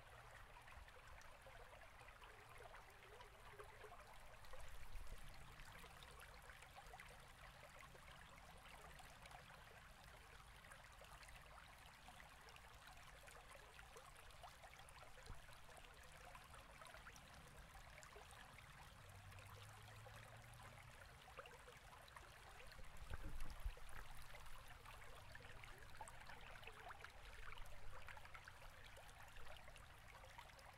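Near silence: faint steady hiss of room tone, with a few soft low bumps.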